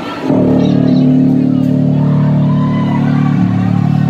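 Loud, heavily distorted electric guitar sound through the concert PA, starting suddenly about a third of a second in and held steady, with a small shift in the notes about three and a half seconds in.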